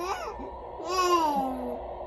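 Infant vocalizing: one drawn-out, contented coo that falls in pitch, about a second in.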